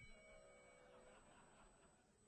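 Near silence: faint room tone with a few faint steady tones that fade out about halfway through.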